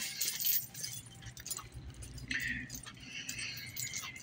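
Faint rustling and light clinking from a phone being moved about, with a few short scraping noises over a low background hum.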